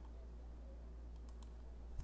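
Quiet room tone with a steady low hum and two or three faint clicks a little past the middle.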